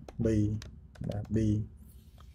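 Computer keyboard keystrokes: a few separate key clicks while a line of code is being typed, heard between short spoken words.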